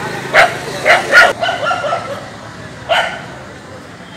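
A dog barking: three sharp barks close together in the first second and a half, and one more about three seconds in, over steady outdoor background noise.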